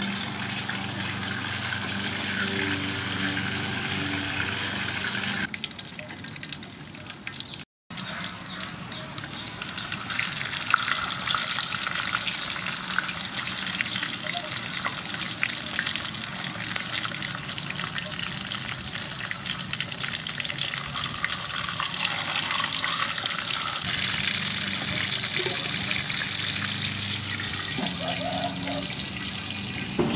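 Whole sea fish frying in hot soybean oil in a wide aluminium wok: steady sizzling with dense crackling pops. The sound breaks off briefly about a quarter of the way in.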